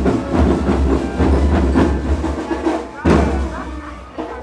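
School marching rhythm band playing drums and percussion with a steady beat and heavy bass drums. A loud stroke about three seconds in, after which the playing drops off.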